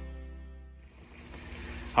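Background music ending: a held chord fades away over about the first second, leaving faint background hiss.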